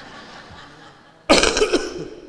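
A man coughing once, close to a microphone: a sudden loud burst about a second and a half in, after a quiet stretch.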